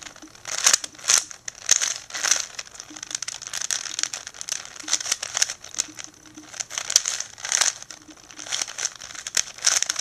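Plastic layers of a 4x4x4 Rubik's cube turned by hand in quick successive twists, a run of clacks and scrapes at roughly two turns a second. The turns are those of an edge-parity algorithm.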